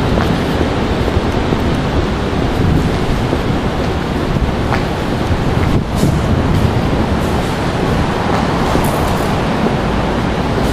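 Steady rumbling wind noise on a handheld camera's microphone while walking outdoors, with a few faint clicks in the second half.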